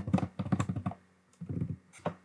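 Typing on a computer keyboard: a quick run of keystrokes through the first second, a short pause, then a few more key presses.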